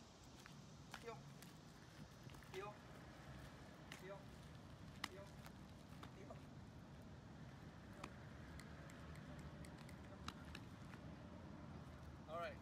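Near silence: faint outdoor background hum, broken by a few short, quiet spoken words and scattered light ticks.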